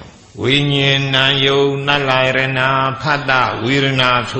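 An elderly Buddhist monk's voice reciting a text in a chanted intonation: one long level-pitched phrase starting about half a second in, then a short break and a second phrase near the end.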